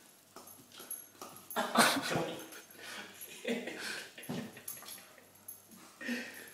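A dog making short, irregular vocal sounds while chasing and biting his own tail, loudest about two seconds in.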